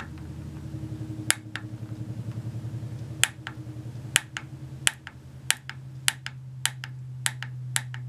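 Click-type torque wrench set at 100 inch-pounds being pulled again and again against a hex shaft glued into a wooden handle, giving a string of sharp clicks at uneven spacing, closer together in the second half. Each click is the wrench reaching its set torque. A low steady hum sits underneath.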